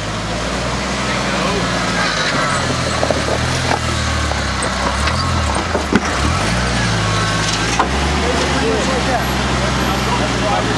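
A rock-crawling Jeep's engine running at low revs under load, its pitch rising and falling several times as the throttle is worked over the boulders. A sharp knock comes about six seconds in and another near eight seconds, from the Jeep working over the rocks.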